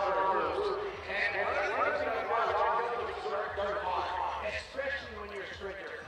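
Voices in the background speaking without clear words, softer than a close microphone voice.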